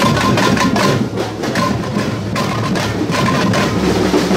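Live samba batucada: rapid, dense strokes of tamborims (small hand-held frame drums) struck with sticks over a low, steady drum beat.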